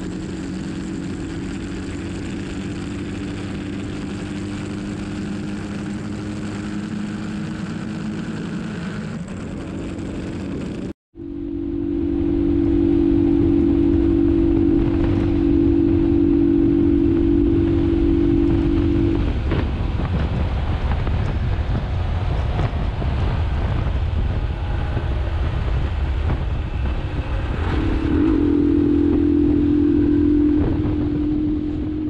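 Motorcycle engine running steadily at highway cruising speed under wind and road noise. The sound cuts out for an instant about a third of the way in, then comes back louder. Later the engine note sinks into the wind noise for several seconds and rises again near the end.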